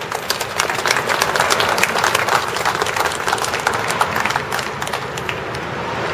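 A small group applauding: the clapping starts just after the beginning, is fullest in the first few seconds and thins out toward the end.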